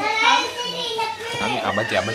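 Children's voices chattering, with a lower adult voice joining near the end.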